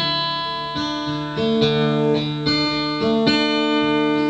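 Acoustic guitar played solo: a slow run of picked notes and chords, each left ringing into the next.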